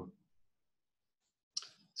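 Near silence, broken about a second and a half in by a brief click, likely a computer mouse click that moves a piece on the on-screen chessboard.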